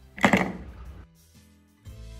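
Pencils dropped into a pen and pencil stand: one short clatter about a quarter second in that quickly dies away. Background music starts near the end.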